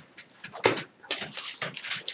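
A pen or stylus scratching and tapping on a whiteboard surface as a word is written, several short strokes with the strongest about two thirds of a second in.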